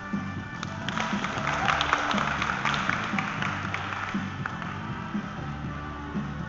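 Rock music with guitar, over which a burst of audience applause swells about half a second in and fades away after about four seconds.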